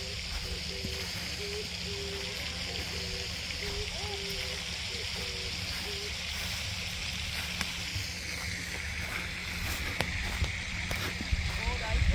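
Outdoor background on a golf course: a steady high-pitched hiss that drops lower in pitch about two-thirds of the way through, with faint short repeated tones and a few faint ticks and distant voices.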